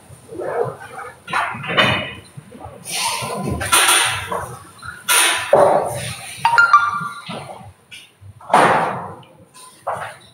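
Several short, loud vocal cries and yelps from young dancers straining through intense leg stretches, coming in separate bursts, one near the middle high-pitched and drawn out. This is the vocalizing through discomfort that dancers are told to do during flexibility training.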